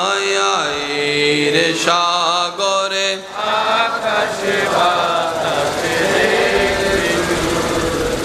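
A man's voice chanting a melodic Islamic devotional verse unaccompanied over a microphone and loudspeakers, in long held, wavering notes. There are short breaks between phrases at about two and a half and three seconds in, after which the voice goes on less clearly sung.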